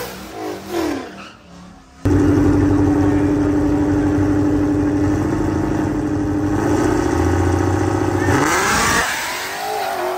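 A Whipple-supercharged Ford Mustang GT's 5.0 V8 revving up and down just after a burnout. After a cut, drag-car engines are held at steady high revs on the starting line. About eight and a half seconds in they launch, the pitch sweeping up as the cars accelerate away.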